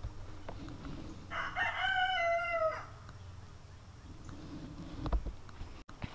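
A rooster crowing once: a single call about a second and a half long that drops in pitch at the end.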